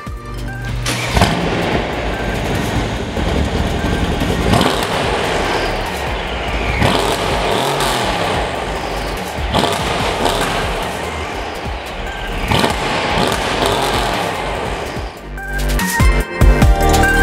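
The twin-turbo 5.5-litre V8 of a tuned Mercedes-Benz E63 AMG S, breathing through aftermarket downpipes and a custom exhaust, revved repeatedly, with surges every two to three seconds.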